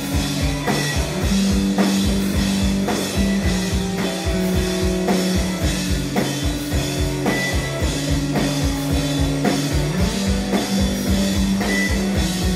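A rock band playing live: a drum kit keeping a steady beat of about four hits a second under electric guitars holding long chords that change every second or two.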